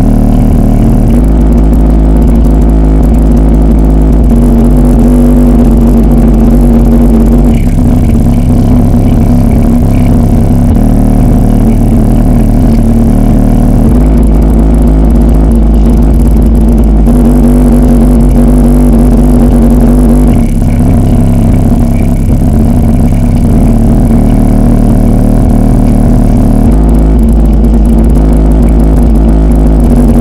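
Distorted synthesized bass test track played loud through a woofer, its cone visibly moving. The deep bass alternates between a very low note and a higher one about every six seconds over a steady mid tone.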